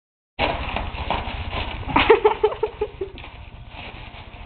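A dog nosing and biting a sheet of bubble wrap: plastic crinkling and rustling with scattered small pops and crackles. About two seconds in comes a quick run of short pitched calls, the loudest part, then the crinkling goes on more quietly.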